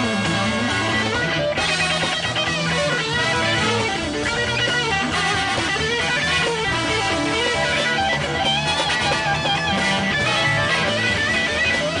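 Live 1970 rock band recording: an electric guitar plays a lead solo of runs and bent, wavering notes over bass and drums.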